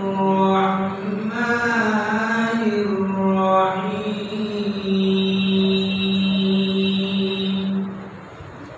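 A man reciting the Quran in a melodic chant (tilawat), gliding between long held notes. Near the end he holds one steady note for about three seconds, then stops.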